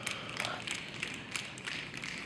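A few faint, irregular light clicks and taps over quiet room noise.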